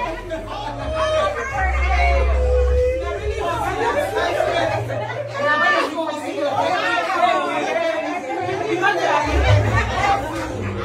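Several women talking and exclaiming over one another at once in excited, overlapping chatter.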